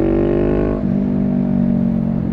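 Honda Rebel 500's parallel-twin engine pulling under acceleration, its note rising in pitch, then dropping abruptly about a second in to a steady lower note.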